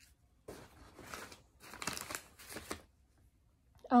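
Packaging rustling as a kit's contents are handled and pulled from a bag, in several short bursts over about two seconds.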